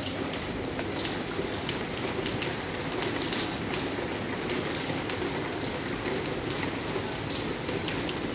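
Water dripping and splashing from leaks in a building's roof: a steady patter with sharp, irregular drips several times a second.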